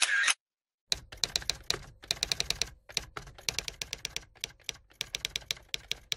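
Typing sound effect: sharp key clicks in irregular quick runs of several a second, like a typewriter, starting after a brief silence.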